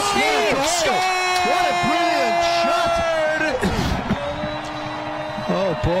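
Excited shouting at a soccer goal: several voices at once, including one long held shout of about three seconds.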